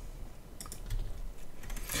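Computer keyboard keystrokes: a couple of separate key clicks, about two-thirds of a second in and near the end, as the Enter key is pressed to insert a blank line in a Word document.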